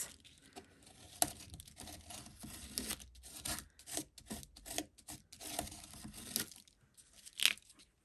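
Leftover black paint being wiped and rubbed off onto paper over a stencil: a run of short, irregular rubbing and scraping strokes, with a louder scrape near the end.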